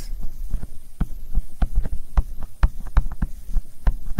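A stylus writing on a tablet screen: a string of irregular taps and knocks, several a second, as the pen strikes the surface.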